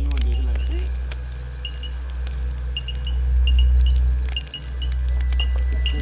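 Crickets chirping in short bursts of a few pulses each, repeating every second or so, over a steady, very deep low drone.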